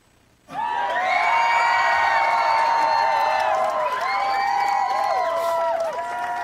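Crowd cheering and whooping, starting suddenly about half a second in after near silence. Many voices hold long calls that bend off in pitch.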